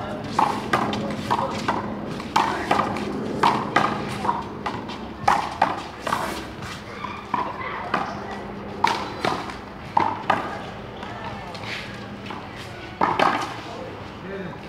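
Small rubber ball being hit by hand against a concrete wall and bouncing on a concrete court during a rally: a string of sharp smacks at irregular intervals, with one loud cluster of hits near the end.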